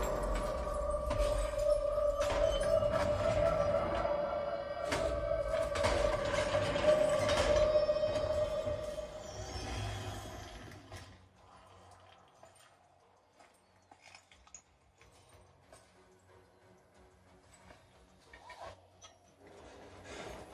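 Film soundtrack played loud through a home-theater surround system and picked up by a phone in the room: score music with a sustained tone and several sharp hits. It fades out about ten seconds in, leaving near quiet with a few faint clicks.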